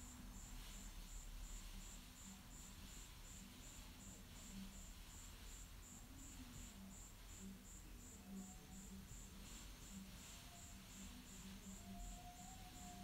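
Near silence: room tone with a faint, high-pitched chirp repeating evenly about three times a second.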